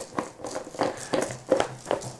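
A carpet-covered cat scratching post being twisted by hand onto its threaded mount, giving irregular short scuffs and clicks, a few per second, as the fabric rubs and the post turns on the base.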